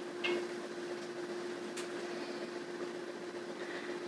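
Quiet room tone with a steady hum and one faint click about two seconds in.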